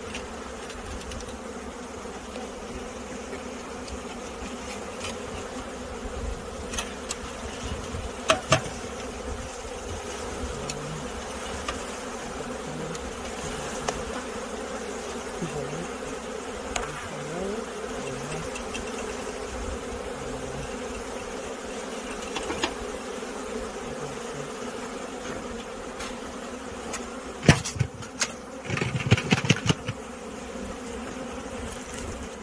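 A mass of honeybees buzzing steadily in a dense swarm. A few sharp knocks cut through, with a cluster of louder knocks and rustling near the end.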